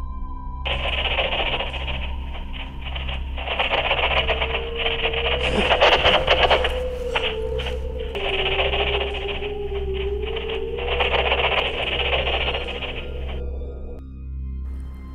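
Dark ambient background music with a steady low drone. Over it runs the rough, muffled sound of handheld camera footage, which starts just under a second in, swells loudest around the middle and eases near the end, with a wavering tone through the middle stretch.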